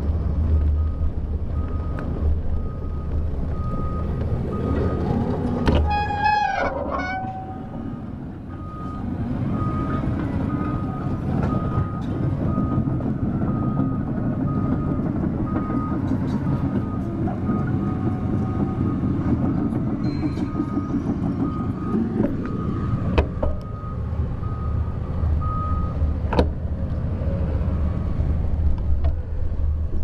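Backup alarm of construction machinery beeping in a steady repeating pattern, stopping a few seconds before the end, over a constant low rumble of wind and rolling on the camera's microphone. A short squeal comes about six seconds in, and there are two sharp clicks near the end.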